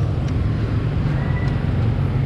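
A motor running steadily: a low, even hum with a faint brief whistle-like tone about a second in.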